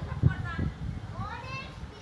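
Distant children's voices calling and shouting, one rising call about a second in, with wind gusting on the microphone as a low rumble underneath.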